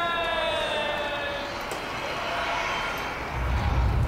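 Projection-mapping show soundtrack over outdoor speakers: a held tone with overtones slides down in pitch and fades about a second and a half in, then a deep low rumble starts near the end.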